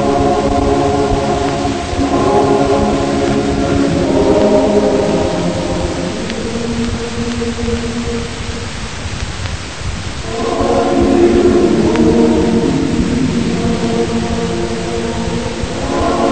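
A choir singing slow, sustained chords that shift every couple of seconds. It falls quieter for a few seconds in the middle, then comes back full.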